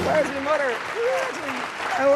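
Studio audience applauding steadily, with excited voices calling out over the clapping.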